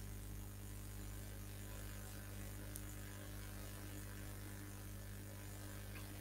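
Faint steady electrical mains hum with a low hiss on an idle microphone line.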